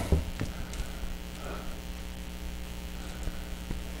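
Steady electrical mains hum, with a few faint ticks scattered through it.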